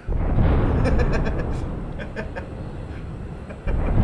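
Thunder-crash sound effect: a sudden deep crash at the start that rumbles and slowly dies down, then a second crash near the end.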